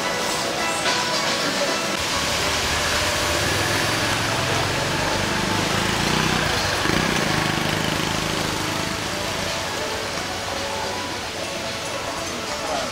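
Background music and faint voices, with a motor vehicle passing on a nearby road, its low engine rumble building through the first few seconds, loudest around the middle and fading away.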